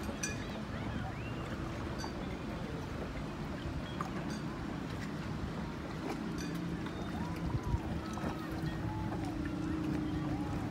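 Outdoor waterside ambience: steady wind and water noise with a low steady drone that grows stronger about six seconds in, and scattered faint clicks and squeaks.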